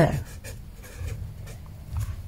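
A pen writing a short word on notebook paper: a few brief scratching strokes in the first second.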